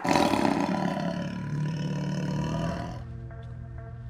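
Channel intro sting: a loud, rough sound effect over music starts suddenly, then dies down after about three seconds to a quieter, steady music bed.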